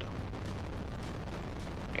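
Steady rush of wind and engine noise from a KTM Duke 125 ridden at about 105 km/h in fifth gear, with wind on the microphone.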